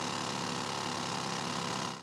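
Pneumatic jackleg rock drill hammering into granite-like rock: a loud, steady, dense rattle that stops abruptly at the end.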